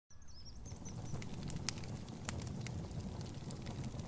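Campfire crackling over a steady low rumble, with a few sharp pops from the burning wood. A bird chirps a few times near the start.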